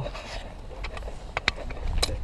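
A few short, sharp clicks and taps from a steel hip flask's screw cap being worked by a gloved hand close to the microphone, over a steady low rumble.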